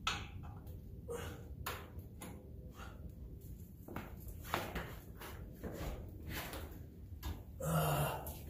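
Irregular light metal clinks and knocks, some with a brief ring, as a boxed lower A-arm is worked into the front suspension mounts of a Can-Am X3 side-by-side.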